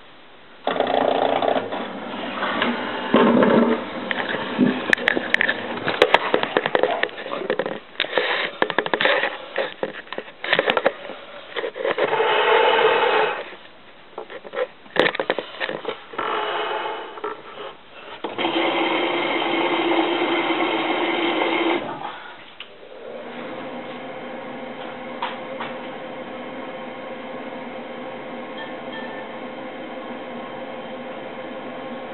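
Miele WT2670 washer dryer starting a drying programme: loud, uneven mechanical running with many knocks for about twenty seconds, then settling into a quieter steady hum.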